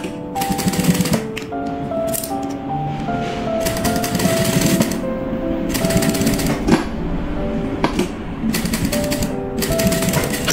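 JUKI industrial sewing machine stitching in several short runs of about a second each, a fast mechanical clatter, over background music with a stepping melody.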